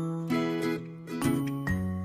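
Light, bouncy background music for children with bell-like tinkling notes over a bass line, the chords changing about every half second.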